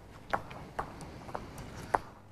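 About seven short, sharp clicks at irregular intervals over a faint hall background.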